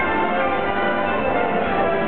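An orchestra playing a waltz: a continuous flow of sustained, overlapping notes with no pauses.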